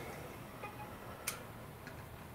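Low room tone with a few faint clicks of small tools and parts being handled, the sharpest a little past halfway.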